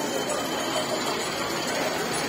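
Muffled music from a distant DJ sound-system tower, blurred into a steady wash of street and crowd noise.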